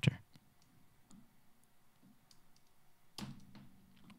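Scattered faint clicks from a computer mouse and keyboard, heard one at a time over quiet room tone. A brief, slightly louder low sound comes about three seconds in.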